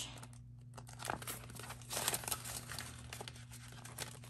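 Crinkling of a clear plastic binder envelope and paper bills as a five-dollar bill is slipped into a cash binder pocket, in uneven bursts loudest about two seconds in. A steady low hum runs underneath.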